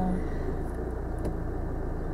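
Car engine idling steadily, heard inside the cabin as a low hum.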